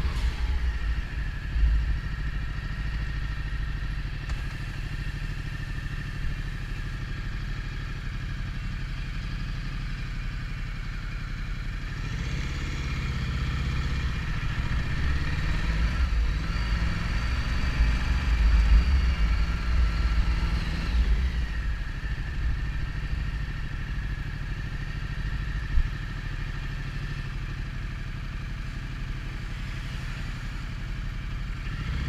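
The 2015 Ducati Multistrada's twin-cylinder engine running at low town speed, heard from on the bike. Its note climbs and falls again about halfway through. A brief sharp thump comes near the end.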